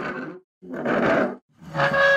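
A cartoon character's voice making three short, rough growling grunts, the last one longer and more pitched.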